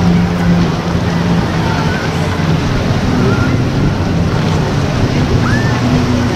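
Outdoor ambience dominated by wind rushing on the camcorder microphone, over a steady low motor hum, with a few faint short chirps.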